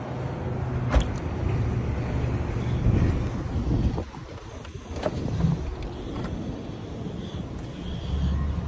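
Steady low outdoor background rumble, with a sharp click about a second in and a couple of softer knocks around four to five seconds.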